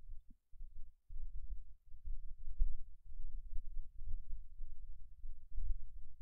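A low, uneven rumble with brief dropouts in the first second, and no speech.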